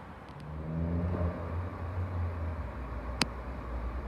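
Distant diesel passenger train approaching: a low engine rumble that swells about half a second in, with a brief pitched engine note near the start. A single sharp click about three seconds in.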